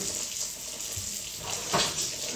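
Kitchen sink tap running steadily while things are washed under it, with a brief louder splash near the end.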